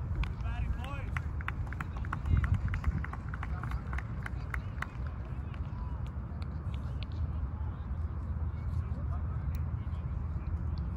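Distant, unclear voices of players calling out across an open field in the first couple of seconds, with scattered light clicks and a steady low rumble from wind on the microphone.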